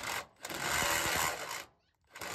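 Cordless Milwaukee Fuel brushless tool spinning a step drill bit through a plastic van trim panel, cutting the hole out to size for a switch. It runs in short bursts, the longest about a second.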